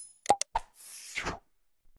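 Sound effects of a subscribe-button animation: a quick double mouse-click, a single click, then a short whoosh lasting about three quarters of a second.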